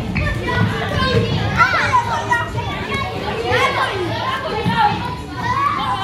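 Many children shouting and calling out over one another during an active game, with louder high-pitched shrieks about two seconds in and again near five seconds.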